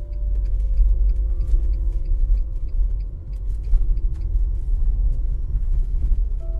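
Low, steady rumble of a moving train, with faint regular clicks about three times a second. A soft held music tone fades out in the first half.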